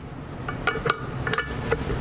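Steel hitch pin being slid through the holes of a steel adjustable ball mount's channel, clinking against the metal several times with brief ringing.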